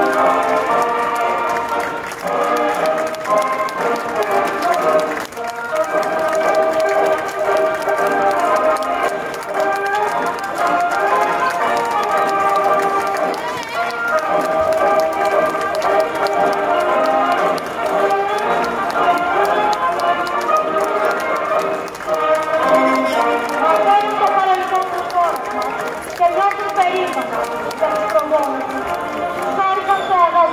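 Parade music blended with the voices of many people, a dense unbroken mix of pitched sound that dips briefly about five seconds in.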